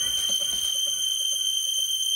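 Breakdown in a bassline house track: a steady, high-pitched synth tone is held while the kick and bassline drop away under a second in.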